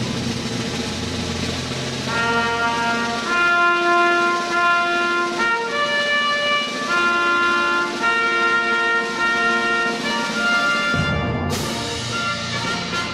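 Orchestral music played for the salute to the national flag: slow, long held chords with brass, over a low timpani roll in the first few seconds.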